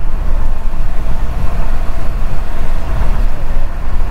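Steady road noise of a car cruising at highway speed on a wet road: a deep rumble of tyres and engine with a hiss over it.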